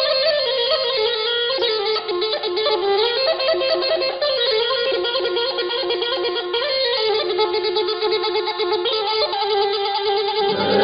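Iranian folk music led by a reedy wind instrument playing a continuous, ornamented melody that moves stepwise without pauses.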